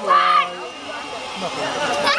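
Young girls' voices: a loud, high-pitched shout in the first half second, then several children talking over each other.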